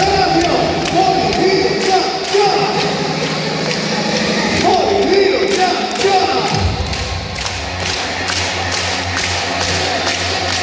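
Cheer music over an arena sound system with a heavy, even bass beat, and a crowd of voices singing and chanting along. The bass line changes about two-thirds of the way in.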